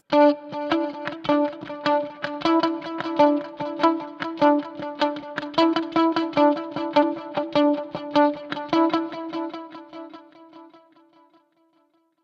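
Electric guitar played through a Fractal Axe-FX III: a repeating single-note figure of about four notes a second, with tempo-synced delay repeats, dying away about ten seconds in.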